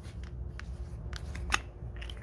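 Plastic screw cap being twisted off a bottle of Howes Diesel Treat: a few light clicks, with one sharper click about one and a half seconds in.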